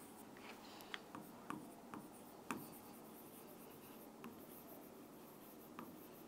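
Faint sounds of a pen writing on a board: a handful of light, separate taps and clicks as the strokes are made, most in the first half and one more near the end, over quiet room tone.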